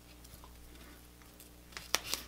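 Foam paving tape being pressed down by hand along a road line: quiet handling sounds over a faint steady low hum, with one sharp click near the end.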